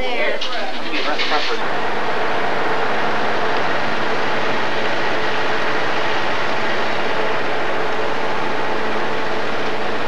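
Voices chattering for about the first second and a half, then a coach bus's diesel engine running steadily as the bus drives off.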